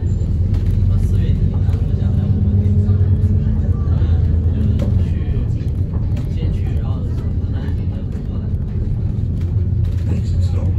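Inside a moving city bus: the engine and running gear give a loud steady low drone, with a held engine note through the first half, while passengers talk in the background.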